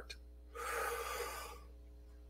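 A man's deep breath drawn in close to the microphone, one noisy inhalation lasting about a second, starting about half a second in.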